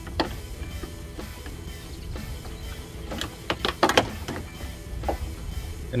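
A plastic under-hood trim cover on a Ford Mustang Mach-E being pulled off, its retaining clips letting go with several sharp clicks, mostly bunched together a little past halfway. Background music plays underneath.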